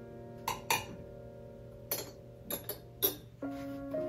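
Metal spoon clinking against a stainless steel saucepan as oats and milk are stirred: several sharp clinks, some in quick pairs, over soft background music with long held notes.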